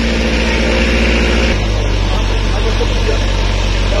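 Auto-rickshaw engine running steadily, heard from inside the cab; its note changes about a second and a half in.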